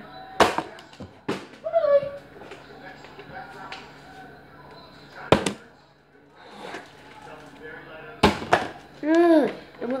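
A plastic water bottle being flipped and hitting a kitchen countertop: four sharp knocks, about half a second in, just after one second, around five seconds and around eight seconds.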